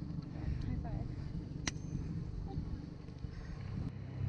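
Outboard motor idling in neutral, a low steady hum, with a single sharp click a little under two seconds in.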